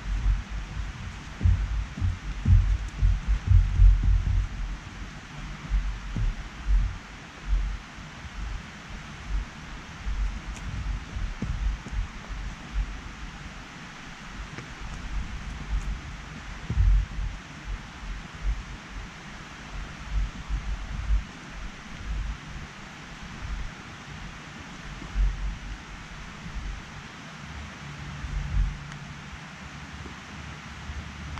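Wind buffeting the microphone in uneven low rumbles, strongest in the first few seconds, over a steady outdoor hiss.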